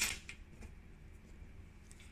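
Near silence: quiet room tone with a low, steady hum.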